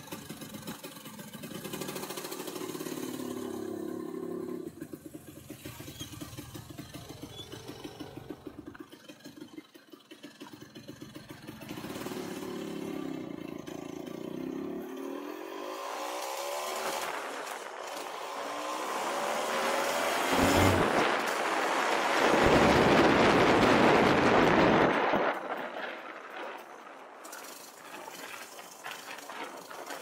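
Vintage Vespa VBB scooter's two-stroke single-cylinder engine pulling away and accelerating through the gears, its pitch rising and falling with each gear. From about halfway in, a loud rushing noise swells over the engine, then dies back near the end.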